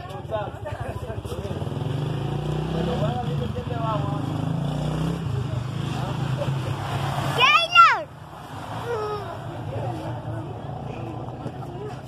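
A steady low engine rumble from a vehicle running nearby, with scattered voices over it and one loud cry falling sharply in pitch about seven and a half seconds in.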